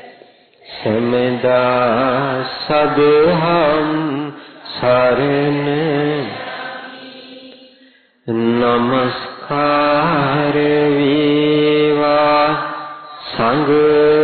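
Buddhist monk chanting solo into a microphone, in long drawn-out phrases with held, wavering notes. There is a short break near the start, and a phrase fades to silence just before the eight-second mark before the chant resumes.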